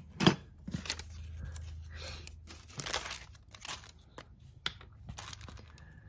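Vellum paper being handled and pressed onto a page, crinkling and rustling in a few short crackles.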